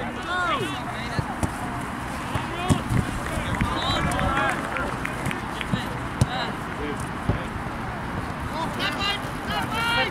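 Players shouting and calling to each other across an outdoor football pitch, the words not clear, over steady outdoor noise. A few sharp thumps of the ball being kicked stand out.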